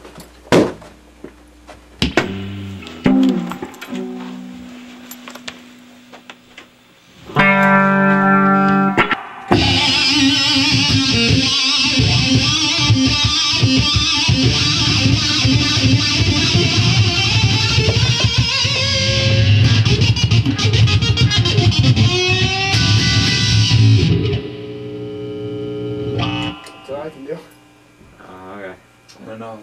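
Electric guitar played through an amplifier: a few clicks and single notes, a ringing chord about seven seconds in, then about fifteen seconds of loud, dense playing that stops suddenly, followed by a few quieter notes.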